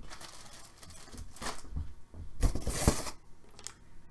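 Trading cards and packaging being handled: soft rustling and light clicks, with a louder rustle about two and a half seconds in.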